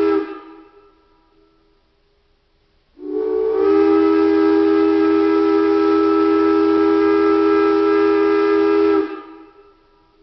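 Steam locomotive whistle: the tail of one blast dies away with an echo at the start, then a single long, steady chord-toned blast of about six seconds begins about three seconds in and fades out near the end.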